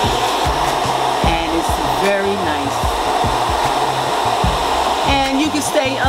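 Handheld hair dryer running on a low setting, blowing heated air through a flexible hose into a soft bonnet hood dryer attachment (Tyche Even°F): a steady, even rush of air.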